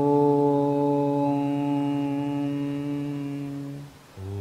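A man's voice chanting a long "Om" to close a mantra, held on one low steady pitch for almost four seconds and slowly fading out.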